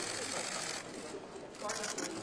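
Camera shutters firing in rapid bursts, a dense run of clicks in the first part and again near the end, over voices talking in the background.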